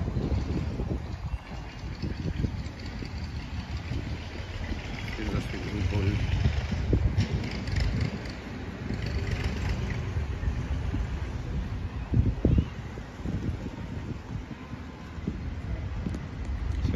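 Uneven low rumble of wind buffeting the microphone, with faint voices now and then.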